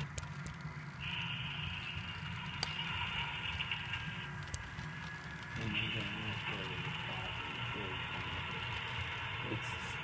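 HO-scale CSX diesel model locomotives running slowly on the layout: a low engine rumble under a steady high whine that drops out for about a second and a half near the middle. Voices talk faintly in the background.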